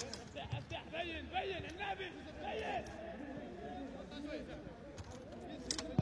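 Faint distant voices over the open-air ambience of a football ground, heard under a pause in the TV commentary.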